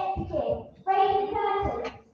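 A child's voice singing into a microphone: two short phrases, the second held on a steady note for about a second before it stops.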